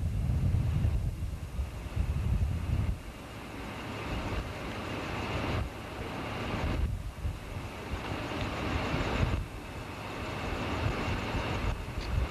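A train passing: an EMD GP-9 diesel locomotive working as it pulls a string of hopper cars, with the cars' wheels rolling on the rails. Wind buffets the microphone in the first few seconds.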